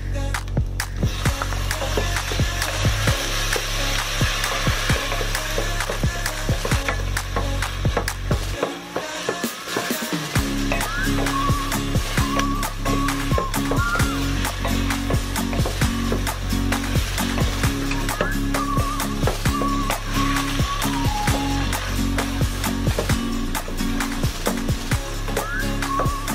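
Background music with a steady beat, over repeated irregular clicks and scrapes of a wooden spatula against a stainless steel pot as chopped onion, garlic and tomato are stirred.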